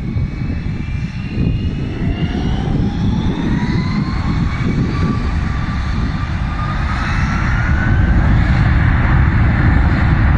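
Jet engines of an Airbus A320-family airliner spooling up to takeoff power as it starts its takeoff roll: a heavy rumble under a whine that rises in pitch, growing louder toward the end.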